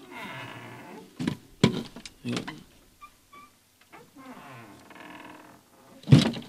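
A wooden door creaking and being knocked shut, with footsteps on boards: a few sharp knocks between about one and two and a half seconds in, a short hush, then more creaking.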